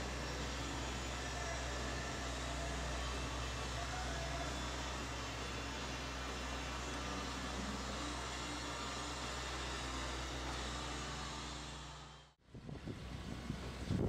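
A steady low mechanical hum with a rushing noise over it. It fades out about twelve seconds in and gives way to a short stretch of different, rougher background noise.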